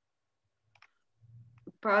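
Near silence on a video call's audio, broken by two faint short clicks a little under a second in and a faint low hum, then a person begins speaking near the end.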